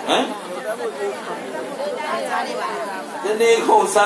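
Speech only: a man talking in a sermon, his voice amplified through a microphone.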